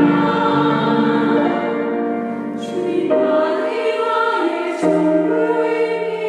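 Women's choir singing a Korean worship song in long held notes, moving to new notes about three seconds in and again near five seconds.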